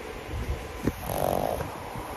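Pug snoring in its sleep: one snore begins about a second in and lasts under a second, with a short sharp click just before it.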